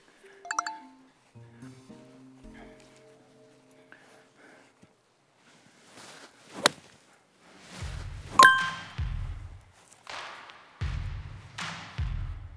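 A golf iron striking the ball: one sharp crack about six and a half seconds in, over soft background music. About two seconds later comes a ringing ding, followed by several loud surges of noise with a low rumble.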